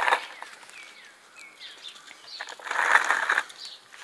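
Outdoor background noise with a few faint bird chirps about a second and a half in, and a brief scraping rustle around three seconds in.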